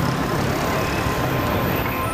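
Steady city street traffic noise, a continuous low rumble of passing vehicles.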